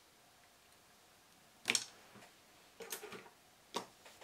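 Small clicks and knocks from handling things on a hobby desk: a sharp clatter a little under two seconds in, a short rattle of several ticks about a second later, and one more click near the end.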